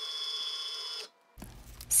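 Cricut Maker cutting machine running with a steady whine, its rollers feeding the cutting mat back out as the mat is unloaded after the cut. The sound stops abruptly about a second in.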